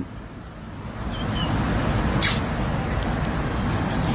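Road traffic noise: a passing vehicle's engine and tyre noise swelling about a second in and then holding steady, with one brief sharp sound just past halfway.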